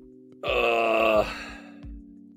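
A man's drawn-out groan, starting about half a second in and lasting just under a second, dropping in pitch as it ends, over background music with a steady low beat.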